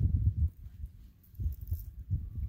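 Low, muffled rumbling thumps in two irregular bursts, one at the start and one about a second and a half in, with no voice or call among them.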